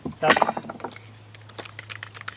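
Light metallic clicks and clinks from handling a PEX pinch-ring crimp tool, a quick scatter of small ticks after a spoken word at the start, over a faint steady low hum.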